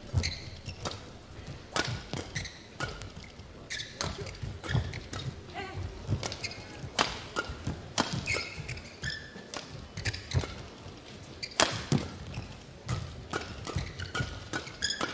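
A fast badminton doubles rally. Rackets hit the feather shuttlecock with sharp cracks about once or twice a second, and court shoes squeak briefly on the mat between strokes.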